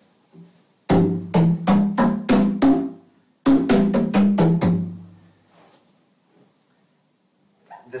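BoxKit cajón (walnut shell with a maple tapa) struck by hand in two quick runs of about six hits each, the hits leaving pitched, ringing tones. The ringing dies away about two seconds before the end.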